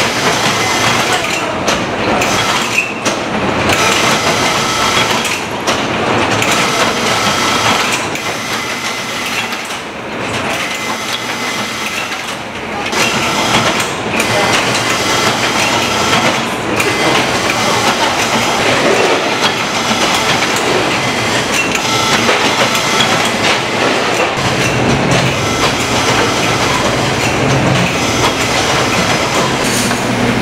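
Food-factory production line running: conveyor belts carrying rice-burger patties make a steady, loud mechanical clatter and whir. A low steady motor hum joins in near the end.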